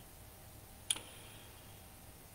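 Quiet room tone with a single short, sharp click about a second in.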